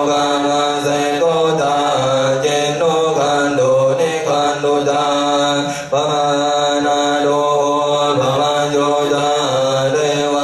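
Thai Buddhist chanting: voices reciting on a nearly level pitch that steps up and down slightly, with a brief break for breath about six seconds in.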